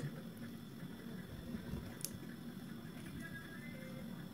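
Faint crackling and rustling of dried smoked catfish being pulled apart by hand to separate the flesh from the bones, with a single sharp click about halfway through.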